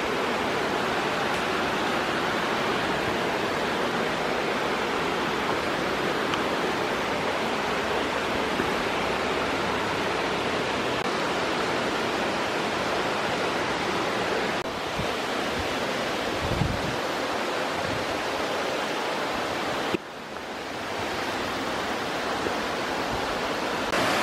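Steady rushing of a waterfall heard from the approach trail, an even wash of falling water; it drops suddenly about 20 seconds in and builds back up.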